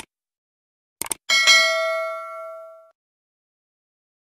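Subscribe-animation sound effect. A short mouse click comes at the very start and a quick double click about a second in, then a bright bell ding with several ringing overtones fades out over about a second and a half.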